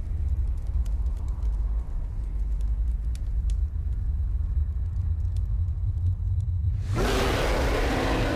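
Trailer sound effects: a deep, steady low rumble with faint scattered crackles, then about seven seconds in a sudden loud boom.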